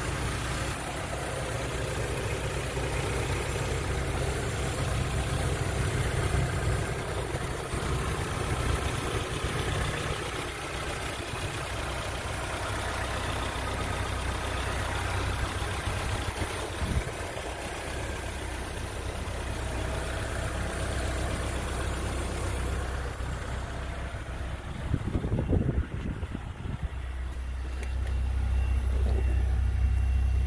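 Nissan D21's 2.0-litre four-cylinder engine idling steadily, heard over the open engine bay. A few knocks come near the end, and then the hum turns deeper and louder.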